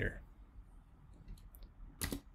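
Computer keyboard clicks: a few faint key taps about a second and a half in, then one sharper key click at the end.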